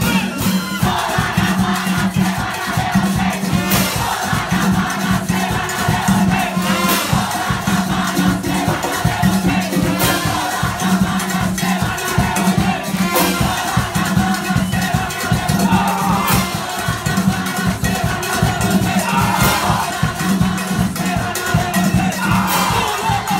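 Live comparsa percussion band playing a driving drum rhythm with a low drum pulse, while a crowd of voices sings and shouts along.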